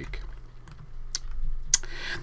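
Two sharp computer key clicks a little over half a second apart, advancing the presentation slide, over a faint steady low hum.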